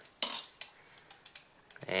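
Small metal parts clinking on a graphics card's sheet-metal bracket as its loosened DVI jack screws and bracket are handled: one sharp clink about a quarter second in, then a few faint ticks.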